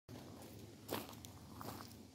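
Faint footsteps on gravel, with one louder step about a second in.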